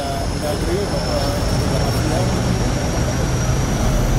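Aircraft engine noise growing steadily louder: a deep rumble with a high, steady whine that slowly rises in pitch.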